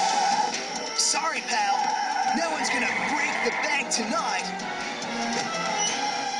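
Cartoon action soundtrack: background music with a few sharp sound-effect hits and short wordless vocal cries.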